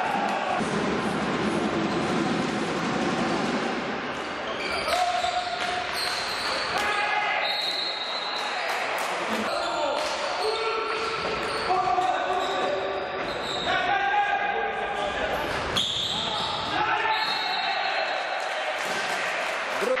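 Indoor hockey match: players' sticks click against the ball and on the hall floor again and again, while players call out to one another, with the echo of a large sports hall.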